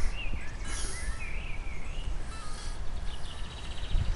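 Birds singing short, warbling chirps over a steady low rumble of wind on the microphone, with a quick run of rapid ticks near the end.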